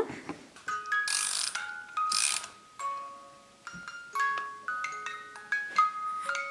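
Music box of a baby's crib mobile playing a slow lullaby melody of chiming notes. Two short rustling hisses cut in during the first few seconds.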